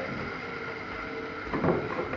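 A faint steady hum, then, about three-quarters of the way in, a run of knocks and scrapes: a freshly shorn sheep's hooves scrabbling on the wooden shearing board as it gets to its feet.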